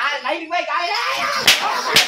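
Two sharp slaps over a man talking loudly, the first and loudest about a second and a half in, the second just before the end.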